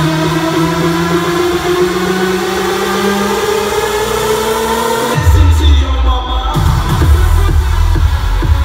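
Future house DJ set played loud over a club sound system: a build-up with synth tones rising in pitch for about five seconds, then the drop, with heavy bass coming in suddenly, the treble briefly cut, and a steady four-on-the-floor kick taking over.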